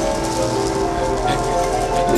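Orchestral film score holding sustained notes, with a light trickling hiss of sand running through fingers over it.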